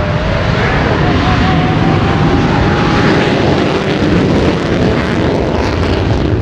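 Loud, steady roar of a military jet's engines at high power on its takeoff run.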